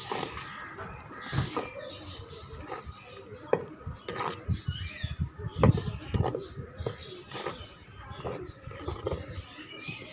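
A spoon stirring a thick mixture in a metal pan, with irregular knocks and scrapes against the pan.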